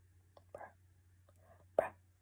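A woman's voice saying "bro" twice, softly, with a faint steady low hum underneath.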